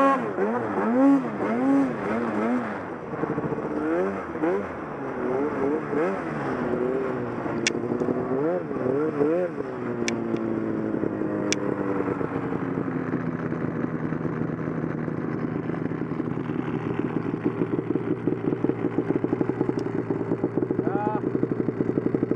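Arctic Cat snowmobile engine revved in repeated throttle blips, its pitch swelling up and down, while the sled is stuck in deep snow; about a dozen seconds in the revs fall away and the engine settles to a steady idle. A few sharp clicks sound during the blipping.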